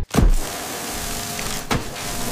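Sound effect of cutting torches biting into tissue: a deep thump just after the start, then a steady hiss with a faint whine under it, and a sharp crack near the end.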